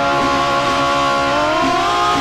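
Two women singing a held note into microphones over a steady instrumental backing. The note glides up in pitch near the end.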